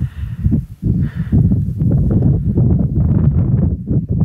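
Wind buffeting the camera microphone outdoors: a loud, uneven low rumble that swells and dips.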